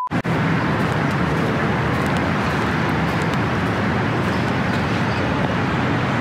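Steady street traffic noise: a constant low rumble under an even hiss, with no distinct events.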